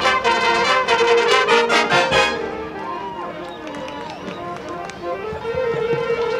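High school marching band playing: loud held brass chords that drop to a softer passage a little over two seconds in, then a sustained note swelling again near the end.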